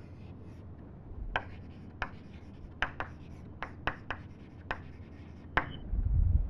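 Chalk writing on a blackboard: about ten short, sharp taps and clicks of the chalk hitting the board, coming irregularly as symbols are written, over a low room hum.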